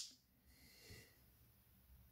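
Near silence, broken by a short click at the start and a faint breath in through the nose or mouth about a second in.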